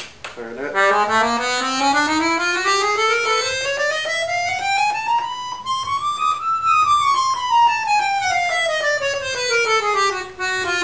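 Giulietti compact free-bass piano accordion with two reed sets (low and middle), played on its right-hand keyboard. A single line of notes climbs steadily in a scale run for about six seconds to a high peak, then runs back down.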